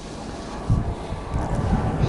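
Wind buffeting the microphone: a low, noisy rumble that swells about two-thirds of a second in.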